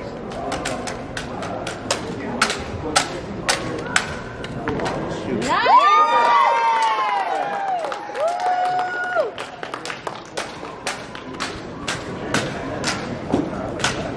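Drill rifles clacking and slapping into the cadets' hands as they are spun, tossed and caught, a rapid, irregular series of sharp claps. About halfway through, spectators whoop and cheer for a few seconds.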